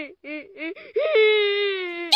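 Banana cat meme crying sound effect: a few short sobs, then one long held wail from about halfway through.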